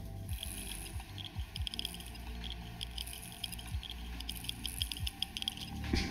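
Flood-damaged Seagate 2 TB 2.5-inch hard drive powered up, its heads clacking and ticking rapidly and irregularly as it spins and seeks. It sounds bad, a sign of the water that ran into the drive through its breather hole, though the drive still runs.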